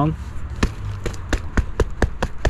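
A freshly filled plastic nursery pot knocked down repeatedly on brick pavers: a run of about six short thumps starting about half a second in, which settles the potting soil and drives out air pockets.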